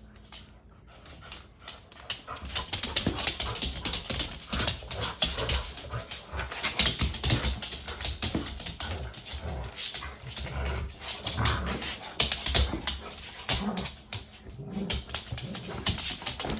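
Two chocolate Labradors playing tug of war on a hard floor: dog whimpers and play noises over a busy run of quick clicks and scuffs, starting about a second in.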